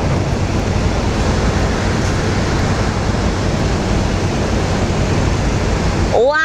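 Steady low hum of a car ferry's engine under a constant rushing of wind and water.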